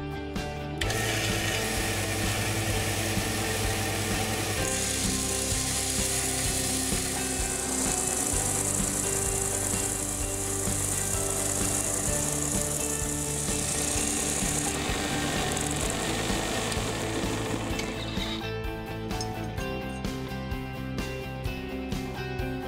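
Belt sander running, with a small tool-steel part held against the abrasive belt to round its corners. The high grinding hiss of steel on the belt is strongest from about five to fifteen seconds in. The machine noise falls away a few seconds before the end.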